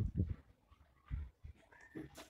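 A few soft, low thuds in a quiet pause: one just after the start and one about a second in.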